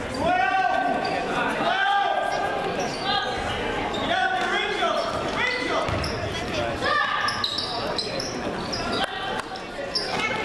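A basketball dribbling on a hardwood gym floor under shouting voices that echo in the large hall, with short high sneaker squeaks near the end as players run the court.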